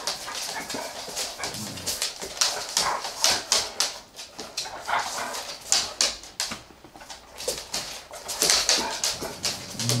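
Vizslas and a small mixed-breed dog playing together: dog whimpers mixed with many quick clicks and scuffles of paws and claws on a wooden floor.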